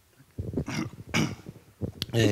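A handheld microphone being passed from one person to another, with a few short handling bumps and breathy vocal sounds close to it, about half a second in and again near the end.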